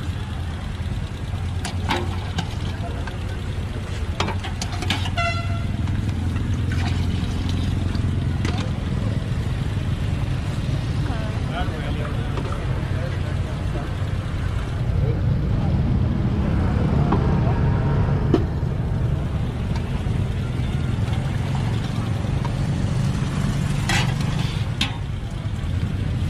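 Busy night street ambience with a steady low traffic rumble. A short vehicle horn toots about five seconds in. Faint background chatter and occasional clinks run through it.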